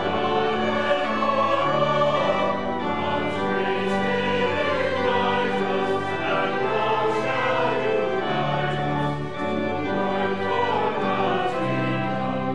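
Church choir singing a slow anthem in held, overlapping chords, accompanied by two violins.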